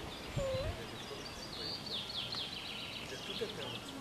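A small songbird singing quick trills of short falling high notes, strongest about halfway through, over a steady outdoor background hiss.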